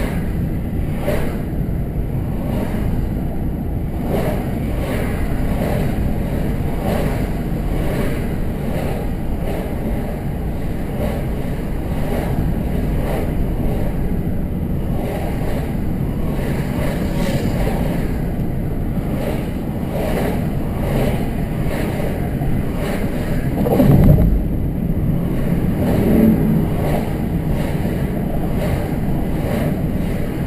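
Steady road and engine noise of a car driving at speed, heard from inside the cabin, with a low rumble from the tyres. About 24 seconds in, a louder swell of rumble rises and falls, with a smaller one about two seconds later.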